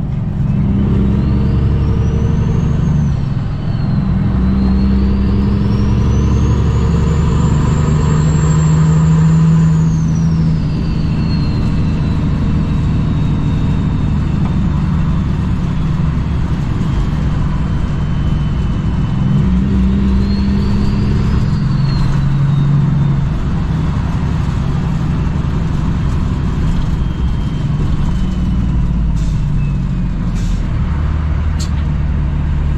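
Cummins ISX inline-six diesel of a 2008 Kenworth W900L running under a heavy load, about 78,000 pounds gross. A high turbo whine climbs and falls away three times: briefly near the start, in a long swell through the first third, and again about two-thirds through. Under it the engine's drone steps in pitch as gears change.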